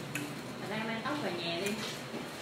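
Voices chattering in the background, with a few faint light clicks, one near the start and a couple near the end.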